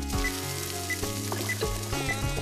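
Sizzling of food frying in hot oil in a wok as tomato purée is poured in, heard over background music.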